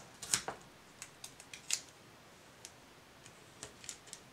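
Foam mounting tape being pulled from its roll and pressed onto the back of a cardstock panel. There are a few short crackles and rustles in the first two seconds, then only faint scattered ticks.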